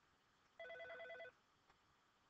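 A single short burst of a telephone's electronic trill ring: several tones pulsing rapidly, lasting under a second, heard faintly about half a second in.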